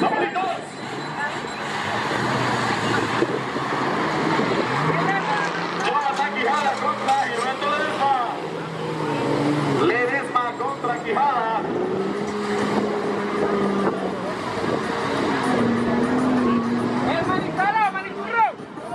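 Engines of off-road 4x4 vehicles revving hard as they drive through mud, their pitch rising, falling and sometimes held high. Spectators' voices and shouts run over them.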